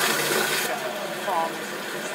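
A rush of running water cuts off abruptly under a second in. A TV newsreader's voice follows, faintly.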